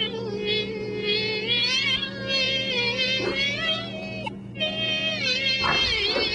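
A mosquito's high, whining buzz, its pitch wavering up and down, with a brief break a little past the middle. A steady low hum runs under it.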